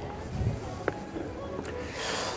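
Footsteps and movement as a man climbs steps onto a boat's side deck: one low thump about half a second in and a light click just before one second, over faint background sound.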